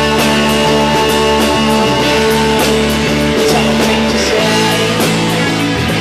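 Loud rock music with guitar, bass and drums: held chords over a bass line that changes about four seconds in, with steady cymbal and drum hits.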